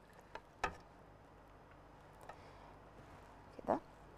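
Quiet kitchen room tone with a couple of faint clicks and one sharp knock about half a second in: a wooden spoon striking a metal cooking pot while meat is lifted out of broth.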